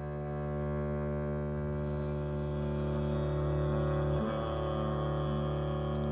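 Double bass played with the bow, holding a long, steady low drone, with a slight break in the tone about four seconds in.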